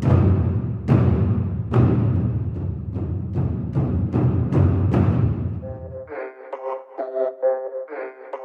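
Soundtrack music: deep, heavy percussion hits about one a second, each ringing out. About six seconds in the low end drops away and a pulsing, pitched pattern in the middle range takes over.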